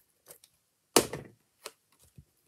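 Card stock and a crafting tool knocking on a tabletop while a card layer is glued down: a faint tap, a sharp knock about a second in, then a lighter tap half a second later.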